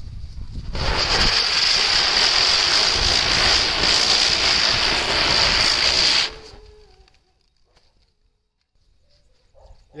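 Ground spinner firework (chakri) spinning on the ground, a loud steady rushing hiss of burning composition with a high, whistle-like edge. It starts about a second in and dies away quickly about six seconds in.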